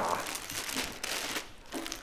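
Plastic packaging crinkling and rustling in irregular bursts as hands rummage through plastic-bagged shirts in a cardboard box.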